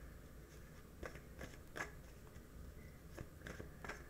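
A deck of oracle cards being shuffled by hand: faint, scattered soft clicks and flicks, about half a dozen over four seconds.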